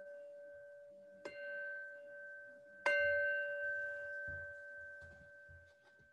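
A meditation bell struck twice, about a second in and again near three seconds in, each strike ringing with two clear pitches that fade slowly; the second strike is the louder and rings on to the end. The strikes mark the close of the meditation session.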